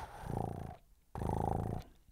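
A cat purring close to the microphone, in two rounds of under a second each with a short break between.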